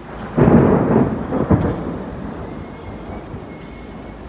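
A clap of thunder: a sudden loud crack about half a second in, rumbling on with a couple of further peaks and dying away about halfway through.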